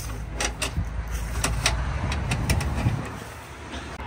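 A caravan's automatic entry step being manoeuvred into place, giving a string of short sharp knocks and clunks in the first three seconds, over a steady low hum.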